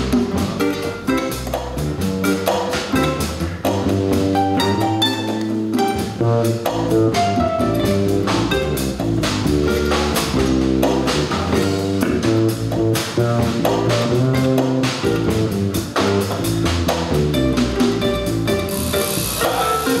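Live jazz combo playing: pedal harp and upright double bass plucking a groove over a drum kit.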